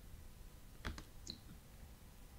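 A few faint, sharp clicks about a second in, against quiet room tone.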